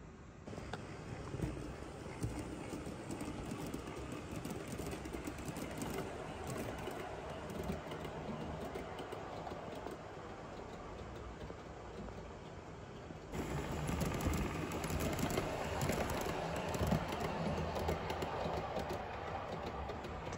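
00 gauge model trains running on the layout: a steady small-motor and wheel noise with frequent light clicks. It gets louder about two-thirds of the way through.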